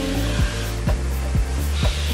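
Pop music with a steady beat of about two strokes a second, over the steady whir of the Zepter Tuttoluxo 6SB Plus cleaning system's motor.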